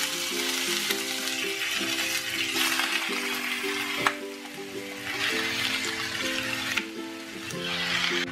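Chicken strips sizzling as they fry in hot oil in a nonstick frying pan, a dense crackling hiss that eases and swells as more strips go in, over background music. One sharp click about four seconds in.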